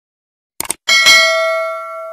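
Subscribe-button sound effect: two quick clicks, then a bright bell ding that rings on and fades away over about a second and a half.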